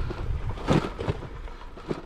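Bicycle rolling along a gravel path, with a steady low wind rumble on the microphone and a short noise burst a little under a second in.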